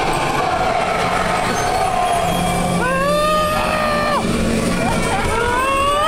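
Dark-ride car rolling along its track with a steady rumble, and two long wailing cries, each rising, held and then falling, about three seconds in and again near the end.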